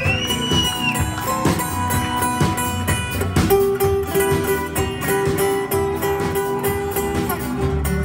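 Live band playing an instrumental passage of a rock song: acoustic and electric guitars, bass and drums keeping a steady beat, with a long held note entering about three and a half seconds in.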